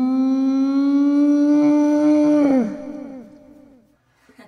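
A woman's voice holding one long, loud note, a hum or wail that creeps slowly up in pitch for about three seconds, then breaks and drops away about two and a half seconds in.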